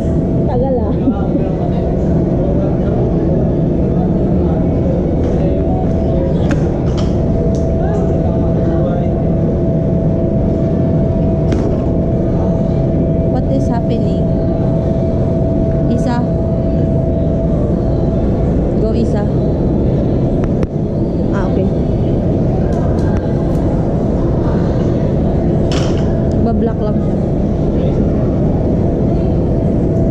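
Loud, steady background din with voices in it and a held tone, with occasional short clinks of bumper plates and barbell collars being handled as barbells are loaded.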